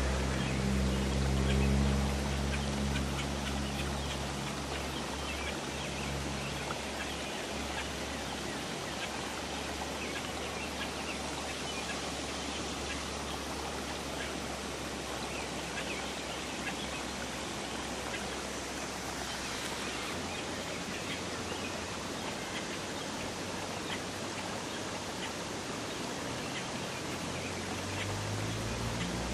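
Steady hiss with scattered faint crackling ticks, and a low hum over the first six seconds or so that then fades out.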